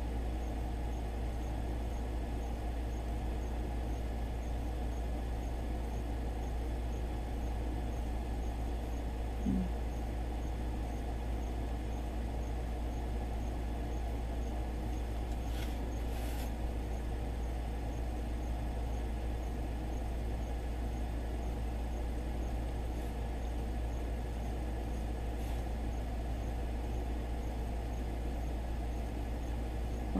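Steady low hum and hiss of background noise, with one brief faint squeak about nine and a half seconds in and a couple of faint clicks around sixteen seconds.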